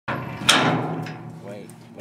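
A loud metal bang on a steel bucking chute about half a second in, rattling and ringing as it fades, with a faint voice near the end.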